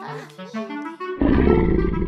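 A short musical cue of stepping notes, then, a little over a second in, a loud cartoon T-rex roar.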